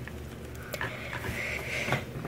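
Faint handling noise from a diecast scale model being held and adjusted by hand: three light clicks over a steady low background hiss.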